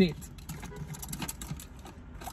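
Plastic water bottle lid being handled, giving a scatter of small irregular clicks and taps.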